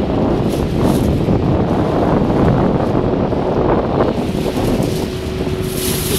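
Strong wind buffeting the microphone, with water rushing over choppy waves from a boat under way. A faint steady hum comes in during the last second or so.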